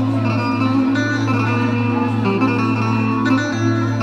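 Instrumental music: a plucked string melody over a steady low drone, with no singing.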